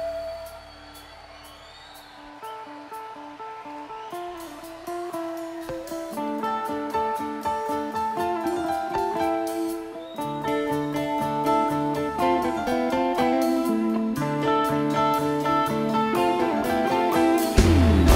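Live rock band's instrumental jam: a held note fades away, then electric guitar picks sparse, spaced notes over a ticking beat. The passage builds steadily in loudness and density until the full band, with bass and drums, comes in loud near the end.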